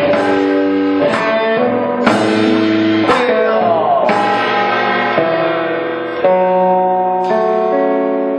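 Live rock band playing an instrumental passage with no vocals: guitar chords ring out over the drum kit, changing every second or so, with occasional sharp drum or cymbal hits.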